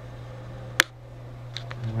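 A single sharp click about a second in, with a few fainter ticks after it, over a steady low hum.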